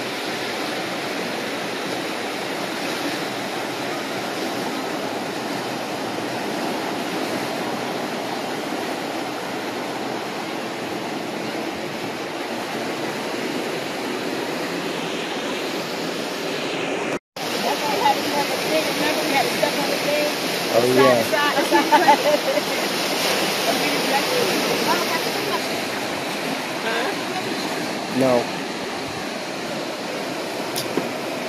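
Steady rushing of surf on a beach, with a brief dropout about two-thirds of the way through. After it, people's voices come through faintly over the waves.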